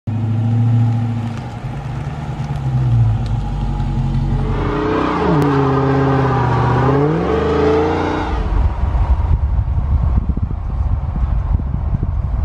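Dodge Hellcat Redeye's supercharged V8 running, its pitch dropping low about five seconds in and climbing back up a couple of seconds later, then giving way to a rough low rumble of the car driving, with road and wind noise.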